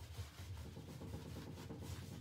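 Paintbrush bristles scrubbing and dabbing antiquing gel into the carved recesses of a painted wood cabinet door: a faint, steady scratchy rubbing.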